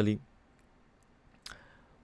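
A man's voice ending a word, then quiet room tone broken about one and a half seconds in by a single brief mouth click, with a faint breath after it.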